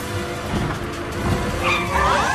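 A cartoon van's tires spinning and skidding as it speeds off, with music underneath.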